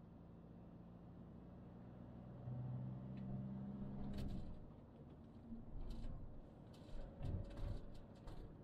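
Toyota Proace diesel van heard from inside the cab while driving: a low engine and road rumble, with a clearer engine hum for a couple of seconds about a third of the way in. A few short knocks and clicks come later, the loudest near the end.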